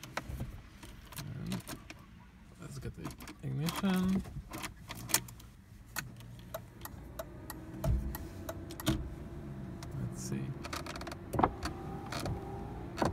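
Keys jangling and sharp clicks at the ignition and controls of a BMW E36. A steady low hum comes on once the ignition is on, and the windshield wipers start moving near the end. The washer pump is not heard: it does not run, even with a new relay fitted.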